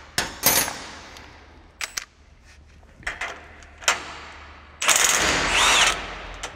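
A few sharp metallic clinks and knocks, then a cordless impact driver hammering loudly for just over a second near the end, backing out a bolt on the conditioner roll's tension bracket to take the pressure off the roll.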